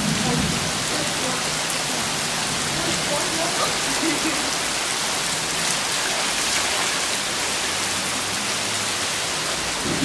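Heavy rain falling steadily, making an even, unbroken hiss on the pool water and the surrounding ground.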